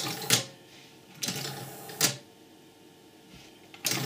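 Relay clicks from a small 12 V two-relay motor controller. In the middle, its small geared motor runs for under a second and stops with a click as the arm reaches its end-stop microswitch.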